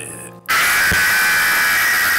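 A sudden, very loud burst of harsh, distorted static-like noise, a jumpscare sound effect, starting about half a second in and holding steady at full blast.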